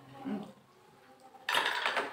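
Forks and cutlery clinking and scraping against plates at a meal table, with a sudden louder clatter about one and a half seconds in.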